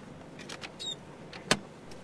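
Inside a small car rolling slowly: a low, steady engine and road noise, a few light clicks and a brief squeak, then one sharp click about one and a half seconds in, the loudest sound.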